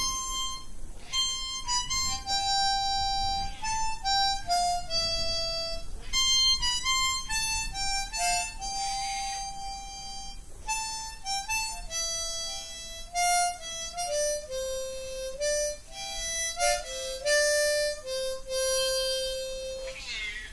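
Hohner harmonica in concert C playing a slow melody of single held notes, ending on a long low note near the end.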